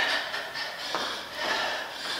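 Trainers stepping side to side on a hard studio floor: a few soft thuds and scuffs from the quick sideways steps.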